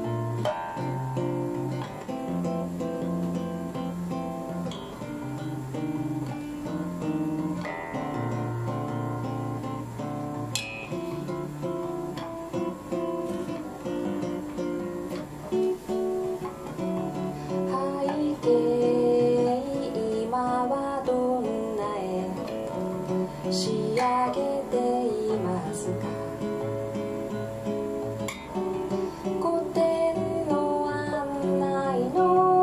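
Nylon-string classical guitar played bossa nova style: fingerpicked chords with a melody line running through them. A voice sings over the guitar in the second half.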